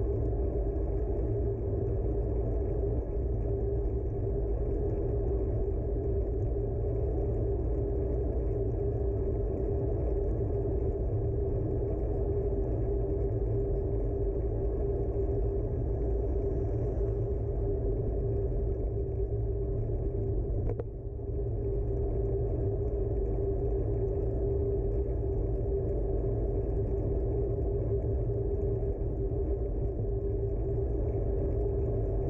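Bicycle rolling along an asphalt path, heard as a steady rumble of tyre and road vibration with wind, picked up through a handlebar-mounted camera, with a steady hum running through it. A single click about two-thirds of the way in.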